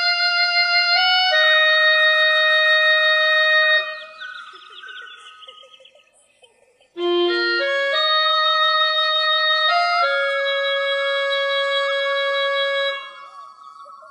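Yamaha PSR-E263 electronic keyboard playing a solo melody in a sustained-tone voice: two phrases of long held notes, each fading out, with a short silence between them.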